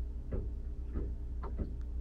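Steady low hum with about four faint, short clicks spaced roughly half a second apart.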